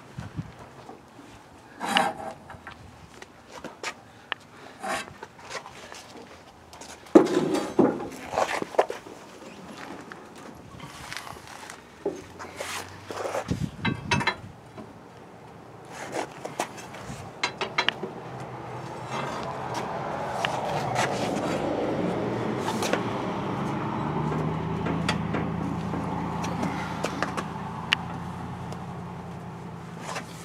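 Scattered knocks and metal clanks from a pry bar working at the seized right front brake drum of a 1967 Ford Galaxie 500; the drum stays stuck. In the second half a steady low rumble builds up and holds.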